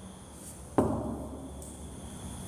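A single sharp bang about a second in, dying away over about half a second in a bare, echoing room.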